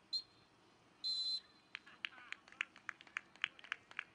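Referee's whistle: a short toot at the start, then a louder, longer blast about a second in, stopping play. It is followed by a quick, irregular string of short sharp sounds.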